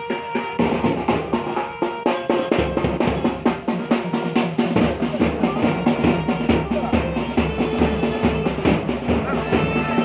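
Temple procession music: dense, rapid drumming with a held reed-instrument melody above it.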